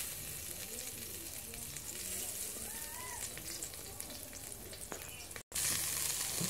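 Meat sizzling and crackling on a wire grill rack over a hot fire, a steady hiss with fine crackles. The sound cuts out completely for a moment near the end.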